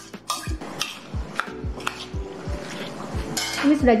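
A metal spoon clinking and scraping against ceramic bowls in a few irregular sharp clicks as chopped vegetables and pineapple are scraped from one bowl into another, over background music with a steady beat.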